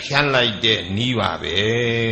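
An elderly monk's voice reciting Pali text in a slow, chant-like intonation, ending on a long held syllable.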